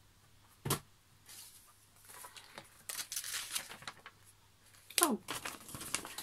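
Paper rustling and crinkling as a paper instruction booklet is handled and opened and its pages turned, in short stretches. There is a single light knock near the start and a short sharp sound near the end.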